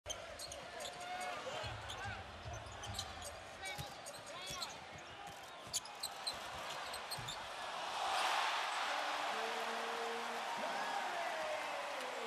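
Basketball bouncing on a hardwood court amid short squeaks and sharp clicks. About eight seconds in, an arena crowd's cheer swells and carries on.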